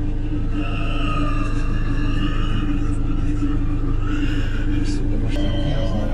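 A wild boar squealing in long, wavering high-pitched cries as a bear attacks it, a sign of distress, over the steady low hum of an idling car engine.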